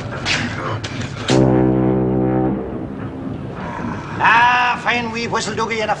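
Clyde puffer's steam whistle blown once, a deep, steady blast lasting a little over a second, starting about a second in.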